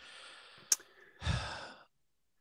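A man breathing out into a close microphone, then a heavier sigh about a second in, with a single sharp click between them.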